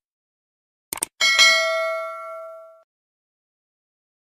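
Sound effect of a subscribe button: two quick mouse clicks about a second in, then a notification bell's bright ding that rings out and fades over about a second and a half.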